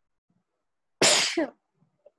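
A person sneezing once, a sudden loud burst about a second in that trails off within half a second.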